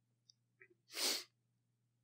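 A single short, breathy burst from a person, about a second in.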